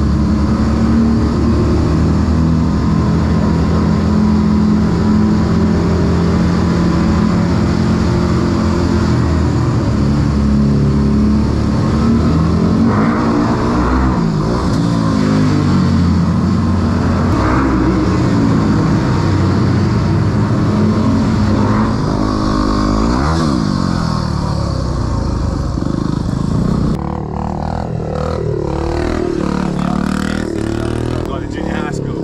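Dirt bike engine running steadily under a rider inside a concrete tunnel, then rising and falling in pitch several times as the throttle is opened and closed. About three seconds before the end the sound changes abruptly to a quieter engine running in the open.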